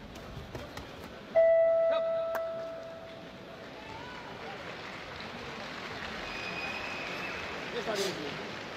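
Boxing ring bell struck about a second and a half in, one loud ring followed by two quick further strikes, ringing out over about two seconds: the bell ending the round. Arena crowd murmur underneath.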